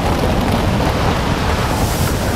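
Loud, steady rush of wind during a skydiving freefall.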